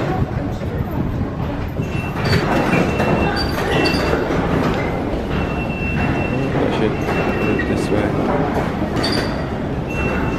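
Busy London Underground station ambience: a steady, dense rumble with voices, and a thin high tone that sounds and stops several times.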